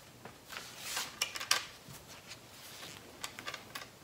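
Light clicks and rustling as a metal ball chain and a cloth rag are handled. A flurry of clicks about a second in, and a few more near the end.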